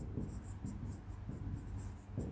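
Marker pen writing on a whiteboard: a quick run of short, faint strokes.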